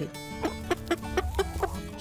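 Chickens clucking, a quick run of short clucks, over background music.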